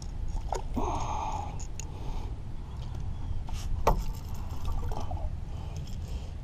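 Water splashing and a few sharp clicks and knocks as a hooked turtle is worked free at the boat's side with a long hook-removing tool. The loudest click comes near the end, over a steady low rumble.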